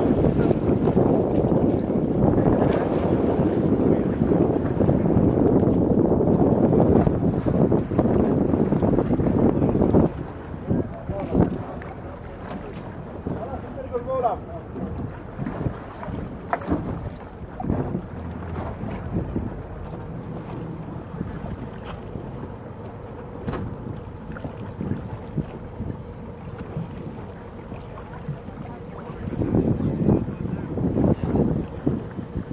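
Wind buffeting the microphone over open sea, with water splashing around an inflatable boat as swimmers climb aboard. The rush is loud and breaks off suddenly about ten seconds in, leaving quieter wind and water with scattered knocks against the boat.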